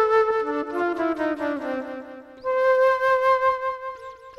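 Solo flute improvising: a quick run of notes stepping downward, a brief break, then one long held note.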